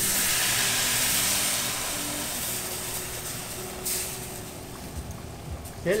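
Artichoke-heart canning liquid poured into a hot pan of sautéed bacon, mushrooms and flour, hitting it with a hiss and sizzle that is strongest at first and dies down as the liquid cools the pan, with a brief flare of hissing about four seconds in.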